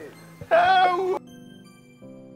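A short, high-pitched laughing cry from a man, lasting under a second, then background music with steady held notes.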